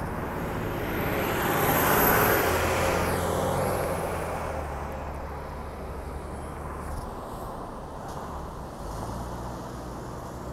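City bus passing close by: engine and tyre noise swell to a peak about two seconds in, then fade, with a faint high whine that drops slightly in pitch as it goes by. Steady road traffic hum follows.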